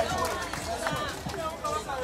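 Speech: people talking, with outdoor crowd noise behind.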